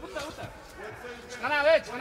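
Mostly low arena background noise, with a man's voice briefly shouting or speaking near the end.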